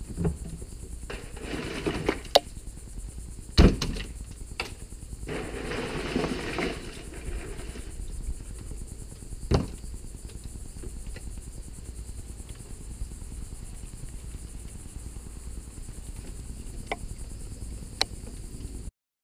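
Fish and a cooler being handled at a plastic cleaning table: knocks and thumps as fish are lifted out and laid down, the loudest about three and a half seconds in, with two short spells of rustling in the first seven seconds. Under it runs a steady high chirring of insects.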